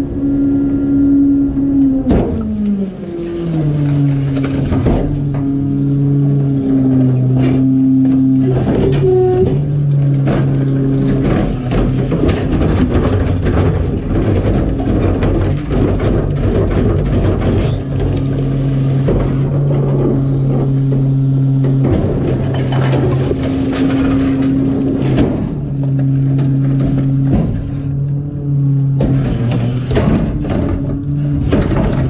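Rear-loader garbage truck's engine and hydraulics running with a steady drone that drops in pitch about two seconds in as the packer blade finishes its stroke, with repeated clanks and knocks of the Perkins cart tippers lifting and banging carts as they dump into the hopper.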